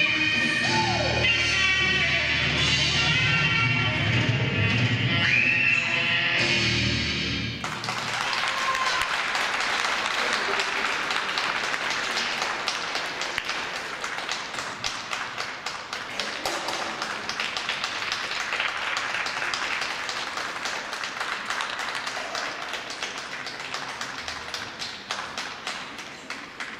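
Program music for a figure-skating ice dance, which stops abruptly about eight seconds in, followed by audience applause that gradually fades.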